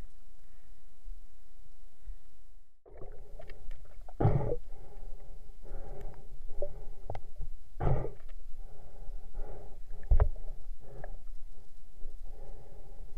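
Muffled water sounds picked up by a camera in a waterproof housing underwater, with water sloshing and rushing past. The sound cuts out briefly about three seconds in, then comes back busier, with three louder surges.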